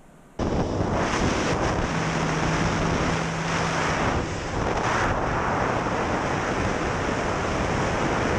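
Wind rushing over the microphone of a GoPro riding on a Mini Talon RC plane in flight, starting suddenly about half a second in, with the plane's electric motor and propeller running underneath. A low steady hum stands out for a couple of seconds near the middle.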